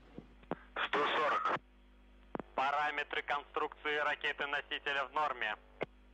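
A voice speaking in short phrases over a narrow-band radio link, with a low steady hum beneath.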